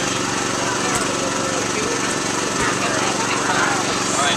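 Steady motor hum of an air blower keeping an inflatable game inflated, with crowd chatter over it.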